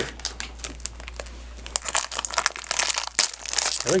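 Foil blind bag crinkling as it is handled and torn open: a rapid run of crackles that gets denser and louder about halfway through.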